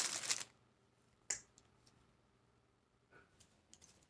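Plastic packaging crinkling briefly as it is handled, then a sharp click about a second in and a few fainter clicks and ticks, with little else to hear.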